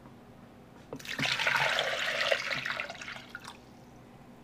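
Water poured from a plastic container into a crock pot onto frozen chicken pieces, splashing. It starts about a second in, runs for about two and a half seconds and tapers off.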